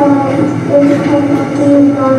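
A young child's voice reading slowly into a microphone over a school gym's PA system, each word drawn out. The voice is heard second-hand through the replayed recording.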